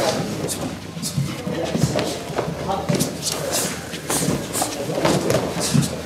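Kicking drill: scattered sharp slaps and thuds of kicks landing on hand-held kick pads and bare feet on a wooden floor, amid overlapping voices.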